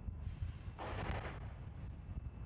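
A burst of gas venting from the Falcon 9 on the pad, a rushing hiss lasting about a second that swells and fades in the middle, over a steady low wind rumble on the pad microphone.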